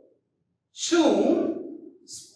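Speech: after a short silence, one drawn-out spoken word begins about three-quarters of a second in and trails off.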